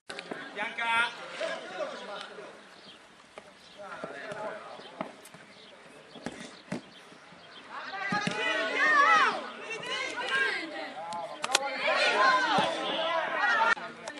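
Shouting voices on a futsal pitch, loudest about halfway through and again near the end, with a few sharp thuds of the ball being kicked.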